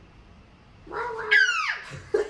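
A single high-pitched vocal cry about a second in, lasting about a second, its pitch jumping up and then gliding down.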